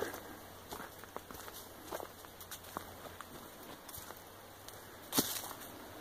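A hiker's footsteps on a trail: faint, irregular steps and crunches, with one louder crack about five seconds in.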